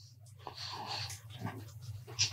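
Faint breathing close to a microphone in a pause between words, over a steady low hum.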